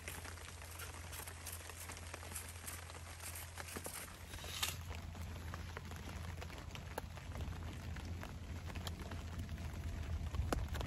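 Light rain pattering on a tarp overhead: a soft steady hiss with scattered sharp drop taps.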